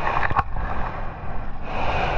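Whitewater foam rushing and splashing around the nose of a surfboard close to a board-mounted action camera, in two swells: one with a few sharp splashes just after the start, the other near the end.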